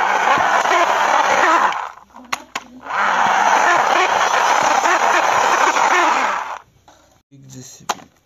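Plastic toy excavator pushed by hand over rough concrete, its plastic tracks and wheels grinding and rattling in two long runs with a short break about two seconds in.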